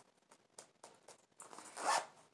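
Zipper on a small fake-suede makeup bag being run along in one pull near the end, after a few faint handling clicks.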